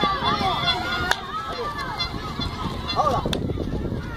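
High children's voices calling and chattering over one another, with two sharp knocks, one about a second in and one a little after three seconds.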